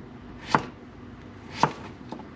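Kitchen knife chopping yellow squash on a plastic cutting board: two sharp knocks of the blade against the board, about a second apart.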